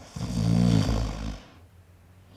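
A snore voiced for a sleeping puppet character: one long snore lasting just over a second.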